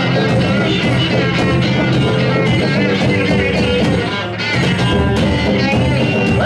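Live garage rock band playing loud and steady with two electric guitars and drums, with a brief lull about four seconds in.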